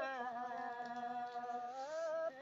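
A woman's voice in Red Dao (Dao Đỏ) folk singing, holding one long low note with a slight waver and a brief bend in pitch near the end.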